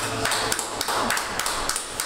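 A small audience clapping: many separate, uneven claps.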